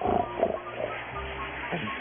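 Cartoon snoring from a sleeping dog character, loudest right at the start, over soft background music.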